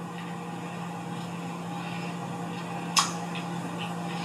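A steady low electrical or mechanical hum over a faint even hiss, with a single short click about three seconds in.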